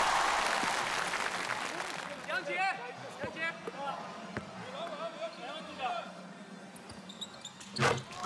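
Crowd noise in a gym dies away after a made free throw. A few single basketball bounces on the hardwood follow as the shooter readies his second free throw, with scattered calls from the crowd. A sharp knock comes near the end as the second free throw is made.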